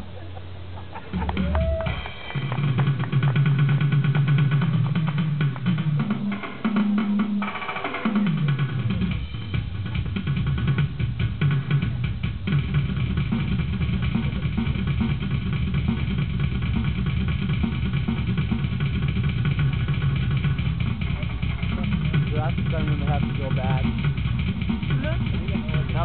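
Electronic drum kit played in a solo. After a quieter start, sustained low tones end in a falling glide about eight seconds in. Then a fast, steady run of drum strokes carries on.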